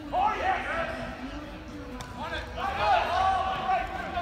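Raised voices shouting and calling out, high-pitched: one burst at the start and a longer stretch from about two seconds in, with a single sharp click in between.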